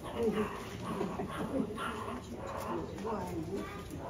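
Indistinct chatter of visitors, children's voices among it, with short rising and falling voice sounds throughout and no clear words.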